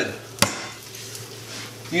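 A single sharp knock as a lemon is set down on a plastic chopping board, with the faint steady sizzle of onions sautéing in a frying pan underneath.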